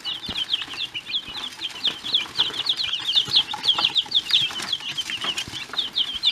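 A brood of young chicks peeping continuously: many short, high chirps overlapping, several each second.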